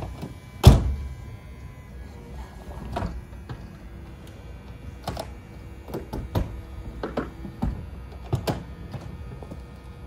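Convertible roofs being raised on a BMW Z3 and a Mercedes SLK230. A loud thunk comes about a second in, then a string of clunks and knocks as the Z3's manual soft top is pulled up and latched, over the faint hum of the SLK's power folding hardtop mechanism.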